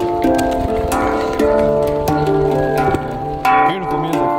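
Handpan played by hand: a series of struck notes, each ringing on with a metallic, bell-like tone and overlapping the next.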